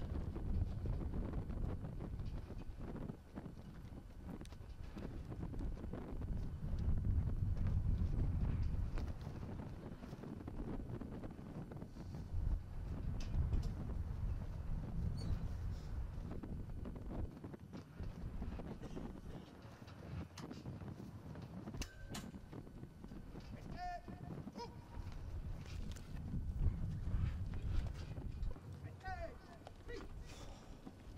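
Wind gusting on the microphone, swelling and fading, with scattered light clicks and a couple of short squeaks near the end.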